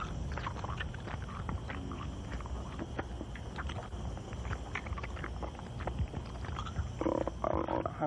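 Film gore sound effects: wet squelching and tearing of flesh as hands dig into a bloody body, over a low steady rumble, with a growling voice near the end.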